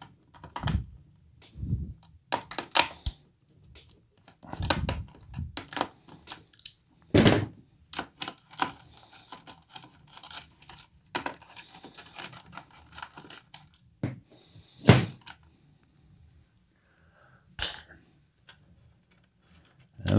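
Irregular metallic clicks, taps and knocks as small pot nuts are unscrewed and the front control panel is worked loose from a guitar amplifier's metal chassis, with a few louder knocks about 5, 7 and 15 seconds in.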